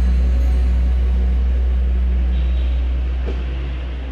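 A loud, steady low hum with a hiss over it, slowly fading.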